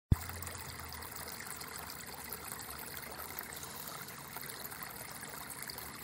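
Steady sound of trickling water, with a sharp click at the very start.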